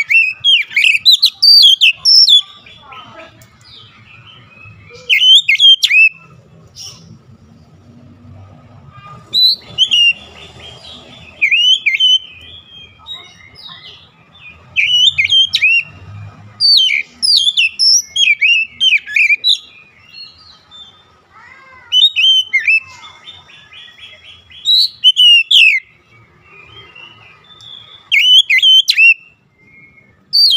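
Oriental magpie-robin (kacer) singing: loud bursts of varied, quickly sweeping whistles and chirps, each a second or two long, every few seconds, with softer chattering between.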